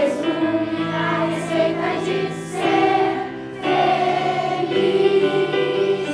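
Children's choir singing a song in held, sustained notes, with a short break between phrases about three and a half seconds in.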